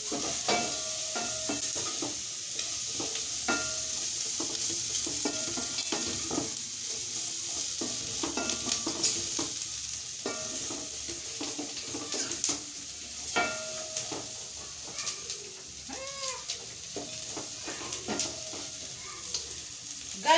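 Chopped beef tripe (matumbo) sizzling as it dry-fries in a pot. A wooden spoon stirs it, scraping and knocking against the pot in irregular strokes.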